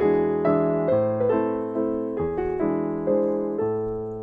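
Background piano music: chords struck every half second to a second, each note fading away before the next.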